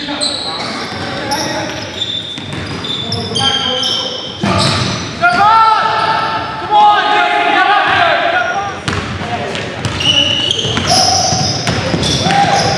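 Pickup-style basketball game on a hardwood gym floor: the ball bouncing, sneakers squeaking in short high chirps, and players' voices calling out, with a louder burst of squeaks and voices in the middle.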